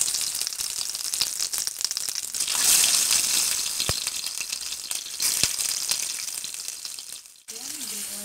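Tomato slices frying in hot oil in a ceramic baking dish on a gas burner: a crackling sizzle that swells as each fresh slice goes into the oil, loudest about three seconds in and then easing. Two light clicks come near the middle.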